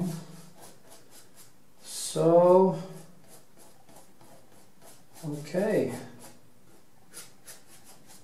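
Soft, repeated scratching of a paintbrush stroking oil paint onto canvas. A man's voice is heard louder, twice and briefly, about two seconds in and again past five seconds.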